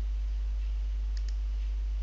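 A steady low electrical hum with a faint double click of a computer mouse button a little over a second in.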